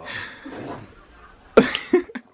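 A man coughing: two short, loud coughs near the end.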